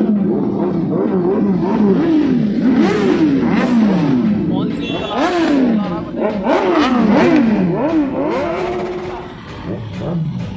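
Several sport motorcycle engines being revved over and over, each rev climbing quickly and sinking back, the revs overlapping one another.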